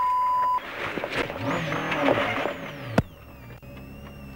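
A short high beep, then a Subaru Impreza WRC's turbocharged flat-four engine running over gravel, heard from onboard. About three seconds in comes one sharp bang, the car striking a stone, and the sound drops away after it.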